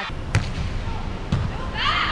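Two thuds of a volleyball striking, about a second apart, the first sharp and loud, the second duller, over the steady background noise of an indoor sports hall.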